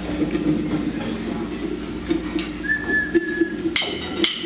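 Electric guitars sounding quiet sustained notes with a thin high steady tone held for about a second past the middle, then the drum kit coming in with hard hits near the end.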